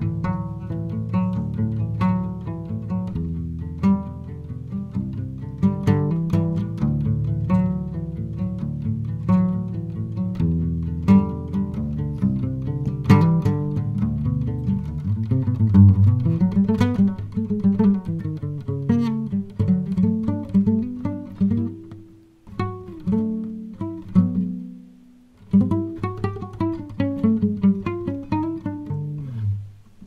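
A 1950s Kay acoustic guitar strung with flatwound strings, fingerpicked in a melodic passage of single notes and chords over bass notes. The playing pauses briefly twice about two-thirds through, then resumes and dies away at the end.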